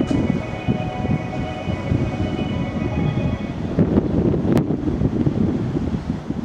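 JR East E231 series electric train pulling out: a continuous rumble of wheels on rail, with a steady electric whine that stops about halfway through. A single sharp click comes near the end.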